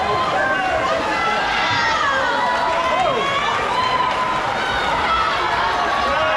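Swim-meet crowd cheering and yelling, many voices overlapping over a steady din.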